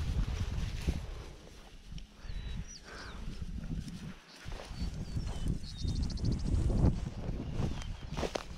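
Footsteps swishing through tall dry grass, with wind buffeting the microphone. Several short, high bird chirps sound over it, one of them a quick trill a little past the middle.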